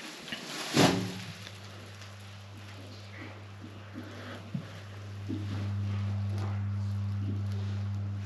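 Low, steady hum of a home sewage treatment plant carried up an open PVC sewer drain pipe, growing louder about five seconds in as the microphone comes close to the pipe opening. It opens with a short crinkle as the plastic bag plugging the pipe is pulled out. The hum comes through only because the drain is unplugged: sealed, or behind a filled trap, it cannot be heard.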